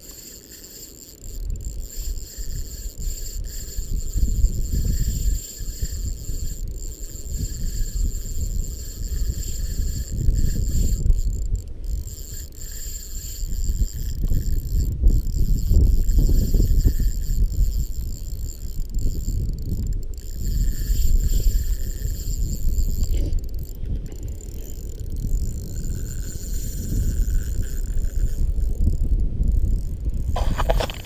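Wind buffeting the microphone in gusts, with the whir of a spinning reel being cranked to retrieve a lure.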